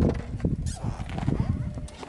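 Car tyre rolling slowly over asphalt onto a full plastic soda bottle: a low rumble, with the plastic crackling and clicking as the tyre squeezes it, loudest about half a second in.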